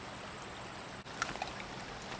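River water running over rocks, a steady rushing and trickling, with a brief faint sound about a second in.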